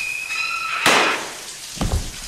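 Shower spray hissing under a shrill, steady screech; a little under a second in, a single sharp gunshot crack cuts the screech off, followed by a low thud near the end.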